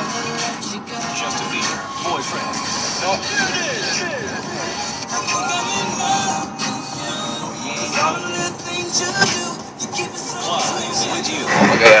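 Car radio playing music with vocals over steady road noise inside the moving car's cabin.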